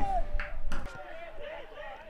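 Football-ground ambience: faint, distant voices calling on the pitch over a low steady background, quieter for the second half, with the last of a commentator's word right at the start.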